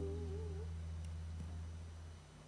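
The tail of a choir's carol dying away: one singer's wavering held note fades out within the first half second. A faint low steady hum carries on and stops just after the end.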